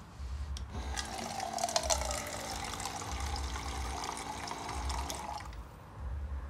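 Small electric water-jug pump faucet running: its motor hums steadily as water pours into a plastic cup for about four and a half seconds, then it cuts off.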